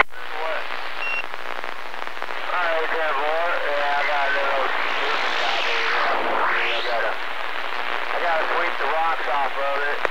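CB radio receiver audio: a steady hiss of static with faint voices of distant stations coming through it. About a second in there is a short beep, and near the middle a whistle slides down in pitch and back up again.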